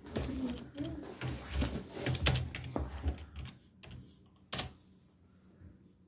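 Typing on a computer keyboard: a quick run of key clicks that thins out, then one louder click about four and a half seconds in.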